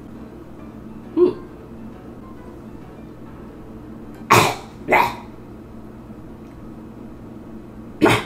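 A person coughing sharply twice, about four and five seconds in, and once more at the end, after a short vocal sound about a second in, all over quiet background music.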